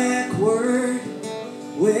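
Strummed acoustic guitar with a man singing live: one long sung note that glides about a second in, and the next line starting near the end.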